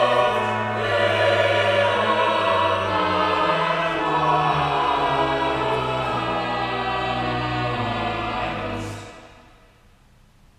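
Church choir singing a slow passage in held chords, ending about nine seconds in as the last chord fades away.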